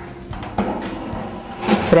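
Aluminium ring cake pan being set onto an oven's wire rack and slid in, metal on metal.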